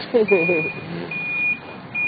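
Vehicle reversing alarm beeping: a steady high single-tone beep, about half a second on and a little off, three times.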